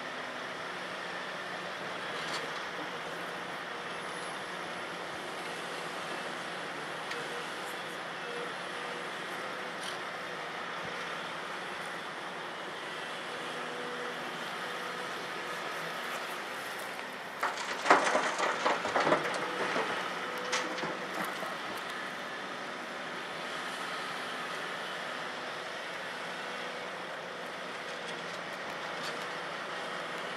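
Heavy diesel engines of a Volvo EC700B LC crawler excavator and a dump truck running steadily at a distance. Just past the middle, a bucketload of limestone rock dumps into the truck's steel bed with a loud clatter lasting two or three seconds.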